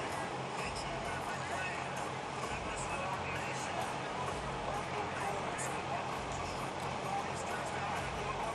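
Steady outdoor crowd and venue ambience: an indistinct murmur of distant voices with faint music from the loudspeakers.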